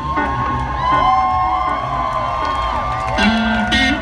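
Live band music played through a festival PA: electric guitar notes that slide up and down over a steady low bass.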